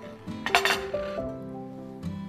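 A metal fork clinks and scrapes against a ceramic salad plate in one short clatter about half a second in. Soft acoustic guitar music plays throughout.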